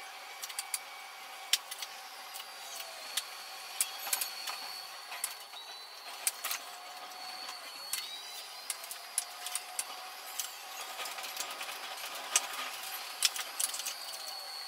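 Oslo metro train running, its sound sped up: rapid, irregular clicks and knocks from the wheels over rail joints and points, with a faint whine that rises and falls every couple of seconds.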